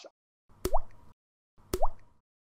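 Two short bloop-like sound effects about a second apart, each a sharp click followed by a quick upward-gliding tone. They are the sound design of an animated logo outro.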